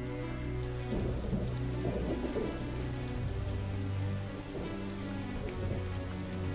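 Drama background score of sustained low notes, over a steady rain-like hiss.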